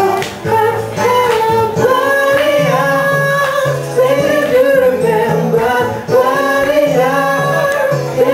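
A live song: a singer's voice over band accompaniment, with a bass line stepping beneath the melody.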